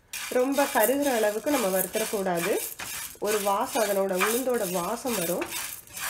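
Wooden spatula stirring dry urad dal in a nonstick frying pan, with the grains rattling and scraping against the pan as they dry-roast, and a person's voice sounding through most of it.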